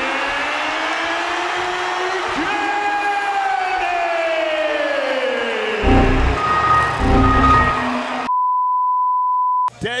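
A ring announcer drawing out the fighter's name "Kenny" in one long falling call over crowd noise. About six seconds in, a meme edit plays two loud bursts of Windows error sound with a ringing tone, then a steady high beep that lasts about a second and a half and cuts off sharply.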